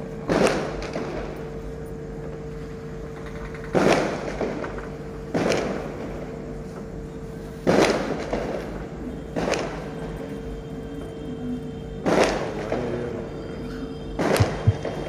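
A series of six loud sudden booms, irregularly spaced one and a half to three and a half seconds apart, each dying away over about half a second, over a steady low hum.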